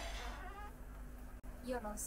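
Faint short cat mews, a couple just before the end, over a low steady hum.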